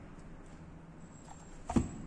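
A single dull knock of an object against a wooden tabletop near the end, with a couple of faint clicks just before it, over quiet room tone.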